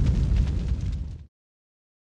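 Deep, boom-like cinematic sound effect of a logo sting, dying away and cutting off abruptly about a second and a quarter in.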